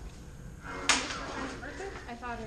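A single sharp crack of combat lightsaber blades striking each other about a second in, with a short ringing tail.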